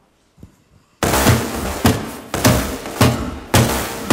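Film soundtrack played over a room's speakers. After about a second of near silence with one soft thud, loud pulsing music starts suddenly, with heavy percussive hits a little under two a second.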